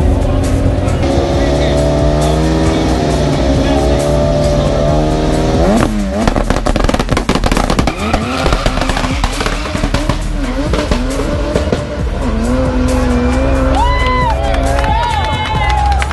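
Drag race car's engine revving hard, its pitch climbing steadily for several seconds, then a sudden change into a rough, noisy stretch of engine and spinning, squealing tyres as the car burns out and leaves the start line.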